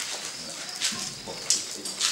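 Outdoor ambience with a few short, high bird chirps, the sharpest about one and a half seconds in.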